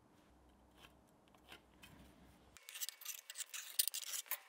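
A marking tool scratching across a steel plate: faint light ticks at first, then, from about two and a half seconds in, a run of short, sharp scratches.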